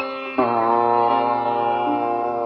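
Slow Indian meditation music on sitar: a new note is plucked about half a second in and left to ring over a low steady drone.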